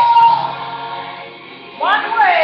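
Sung vocal music: a held note fades away over the first second or so, then a new phrase with gliding notes begins near the end.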